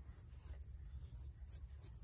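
Straight razor scraping hair off a wet scalp in a few short, scratchy strokes.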